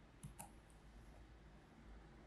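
Two faint clicks of a computer mouse button a fraction of a second apart, against near silence.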